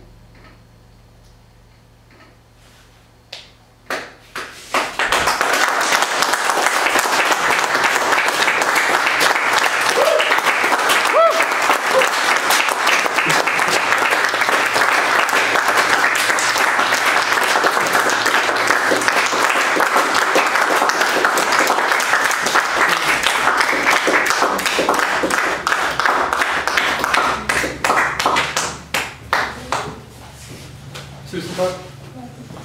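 Audience applauding at the close of a live electronic set. The applause comes in about four seconds in, as a low steady electronic hum cuts off, and thins to scattered claps near the end.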